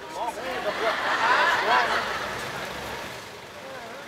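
Several voices overlapping in indistinct chatter, swelling about a second in and fading toward the end.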